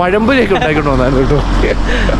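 A man talking, over a steady low rumble.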